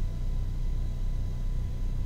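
Steady low rumble of room background noise with a faint, steady high whine over it.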